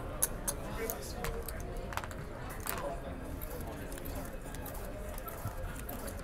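Sharp little clicks of casino chips and playing cards being handled and dealt onto a felt blackjack table, over a low murmur of background voices.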